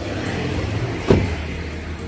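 A car door being shut, one thud about a second in, over a steady low hum.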